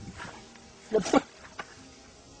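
A goat bleating once, briefly, about a second in, its pitch falling.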